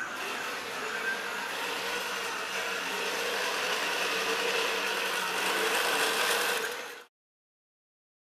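iRobot Create drive motors and gearboxes whirring steadily as the robot is driven around the room by keyboard remote control, then stopping suddenly about seven seconds in.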